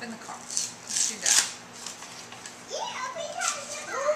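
Paper rustling and crinkling as a greeting card and its envelope are handled, loudest about a second in, followed by a toddler's short babbling vocalizations in the second half.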